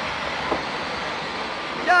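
Passenger train pulling out of the station: a steady low noise with a single faint knock about half a second in.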